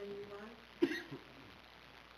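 A held low note fades out about half a second in. Then a person clears their throat once, sharply, just under a second in.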